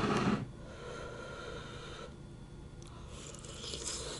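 Close eating sounds: a person slurping and eating stew from a wooden spoon. There is a short, loud, noisy slurp right at the start, quieter sounds after it, and a soft hissing slurp near the end.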